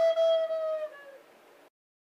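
A soprano recorder holds one note, which sags slightly in pitch and fades out about a second in, followed by dead silence.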